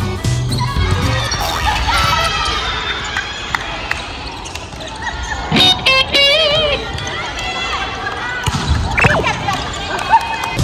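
Volleyball rally in a gym: players calling out and the ball being struck, echoing in the hall, over background music. A loud, wavering high tone sounds for about a second just before the middle.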